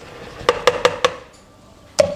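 A plastic bowl of sifted flour mix knocked against the rim of a plastic mixing bowl about five times in quick succession, shaking the dry ingredients out into the buttermilk.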